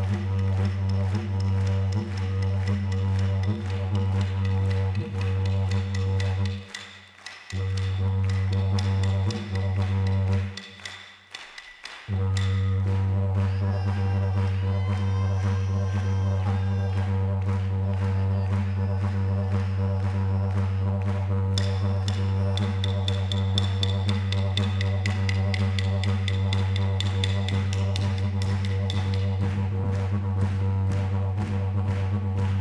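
Yidaki (didgeridoo) played as a continuous low drone with a strong steady fundamental. The drone drops out briefly twice, about seven seconds in and again around eleven seconds.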